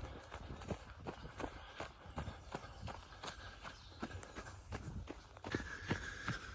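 A runner's footsteps on a dirt and grass woodland path: faint, even footfalls a little under three a second, at an easy running pace.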